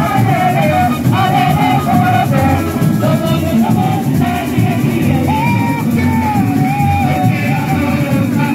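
Samba-enredo played live: a samba school bateria drums a steady, dense rhythm under a singer's melody.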